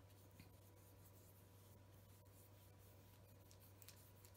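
Near silence: faint strokes of a paintbrush spreading acrylic paint over a wooden cutout, over a low steady hum.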